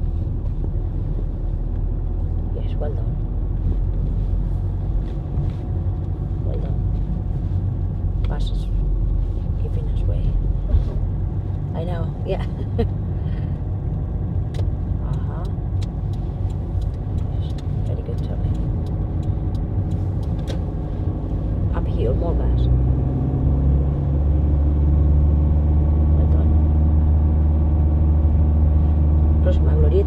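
Car engine and road rumble heard from inside the cabin while driving. About two-thirds of the way through, the engine note grows louder and steadier.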